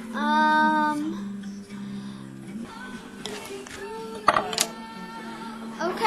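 A girl sings one held note for about a second at the start, then softer vocal sounds follow with two sharp clicks about four seconds in, over a steady low hum.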